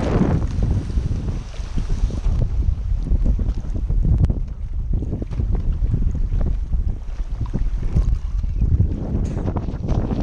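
Strong wind buffeting the microphone in irregular gusts, a heavy low rumble over choppy water slapping close by. At the very start the hiss of a planing windsurf board rushing past fades away.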